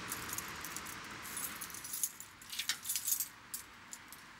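A bunch of keys jangling and clinking in a hand at a gate lock, coming in quick clusters of small metallic clicks, busiest from about a second in until shortly before the end.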